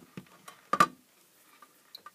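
A Fluke multimeter being handled on the bench: a few light clicks, then a sharper knock a little under a second in, as the rotary selector is turned and the meter is set down.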